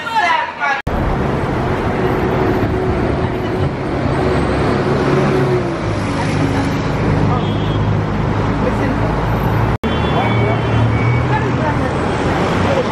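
Steady low rumble of a vehicle engine idling close by, with voices talking in the background. The sound breaks off sharply for an instant twice, about a second in and near the end.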